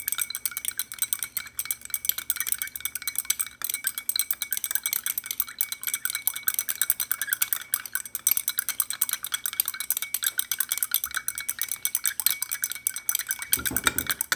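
Stirring rods clinking rapidly and continuously against the sides of two small glass beakers as liquid and water are stirred fast.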